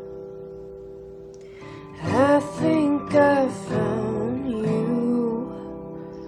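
Song intro on acoustic guitar with held, ringing chords; about two seconds in, a voice comes in with a few drawn-out notes that bend in pitch, then fades back to the guitar.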